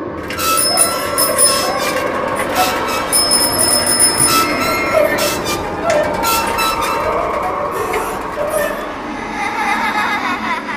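Motorised Halloween tricycle prop rolling across the floor, giving off a continuous loud squealing, grinding noise with high whistling squeals in the first few seconds.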